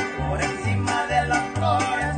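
A string band of two violins, small strummed guitars and a large guitar playing a lively tune: the violins carry a sliding melody over steady strums, and the bass notes alternate between two pitches about twice a second.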